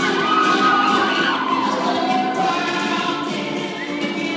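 Recorded a cappella pop song: several women's voices singing in close harmony, with no instruments.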